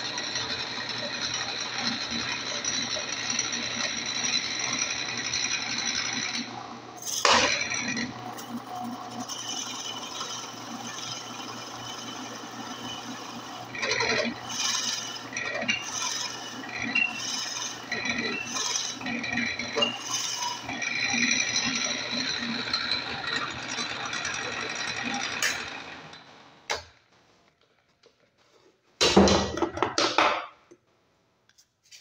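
Benchtop drill press running with a steady motor hum while a Self Cut threaded-tip spade bit bores into a wooden block, with stretches of louder cutting as the bit is fed in. The motor is switched off near the end and runs down, followed by a short wooden clatter as the block is handled.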